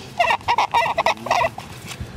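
A bird calling in a quick series of short, high calls that starts just after the beginning and stops about a second and a half in.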